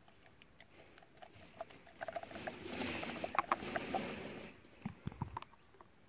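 Plastic snuffer bottle working in a gold pan of water: squeezed and released to suck up water and fine gold, giving a clicking, slurping gurgle that swells for a couple of seconds in the middle. A few soft low knocks follow near the end.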